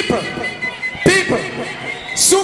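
Music and a man's voice over a large sound-system PA in a hall, with no bass line under them and two sharp bursts, at the start and about a second in.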